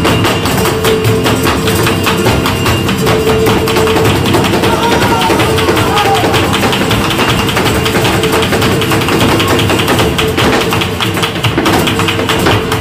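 Live flamenco: rapid stamping footwork (zapateado) from the dancer, with flamenco guitar and hand-clapping accompaniment, dense fast strikes throughout.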